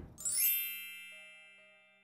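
Edited-in chime sound effect for a video transition: a quick upward sweep of bright, bell-like tones about a quarter second in, which then ring on and slowly fade away.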